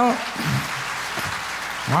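Audience applauding: an even wash of clapping from the crowd after a song, with a man's voice speaking briefly at the start and again at the very end.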